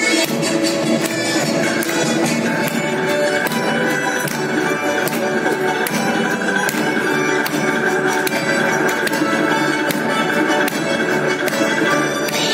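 Russian folk dance music with a steady beat, played over loudspeakers for a children's folk dance.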